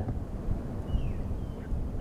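Low rumbling background noise with a faint, high falling chirp about a second in.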